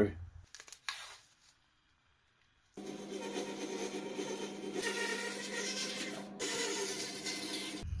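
Bandsaw running and cutting through a small block of wood, starting after a short silence about three seconds in; the cutting hiss grows brighter partway through and breaks off briefly near the end.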